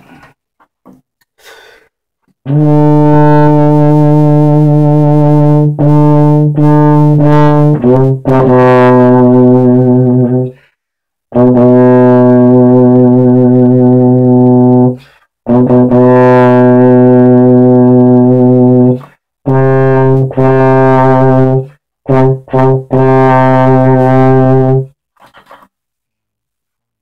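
Solo euphonium playing a slow passage of long held low notes, starting about two seconds in, in phrases broken by short pauses for breath, the pitch stepping down about eight seconds in.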